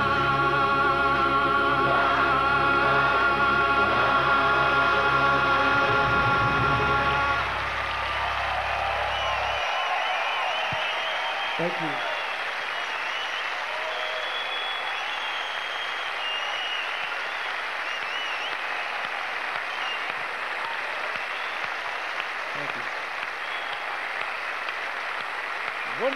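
A choir and band holding the song's final chord, cutting off about seven seconds in, followed by a large audience applauding steadily.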